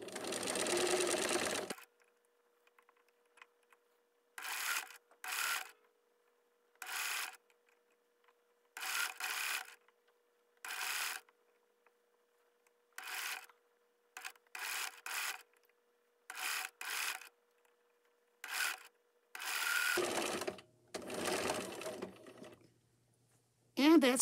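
Electric sewing machine stitching through thick bundled mop yarn, a run of about two seconds at first, then many short spurts of about half a second with pauses between, and longer runs near the end.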